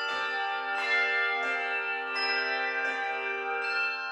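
Handbell choir ringing a piece: chords of several handbells struck together about every three-quarters of a second, each chord left to ring on into the next.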